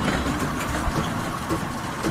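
A children's amusement ride of small linked cars running around a circular rail track, giving a steady low rumble.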